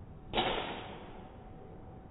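A single sharp crack of a golf iron striking a ball off a range mat, about a third of a second in, dying away over about half a second.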